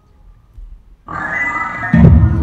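Double bass played with a bow. After a near-pause, a high bowed sound with many overtones starts suddenly about a second in. A loud low note attacks right at the end.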